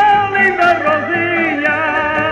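Live Portuguese folk music: concertinas (diatonic button accordions) playing a melody with strummed guitars, and a voice singing long, wavering notes over them.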